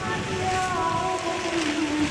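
Musical fountain's water jets rushing and splashing, with slow music of long held notes playing over them; one note steps lower near the end.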